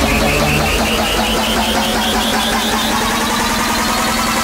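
Raw hardstyle track in a breakdown: a gritty, buzzing synth texture over a steady low tone, with a short high note repeating about four times a second and slowly rising in pitch.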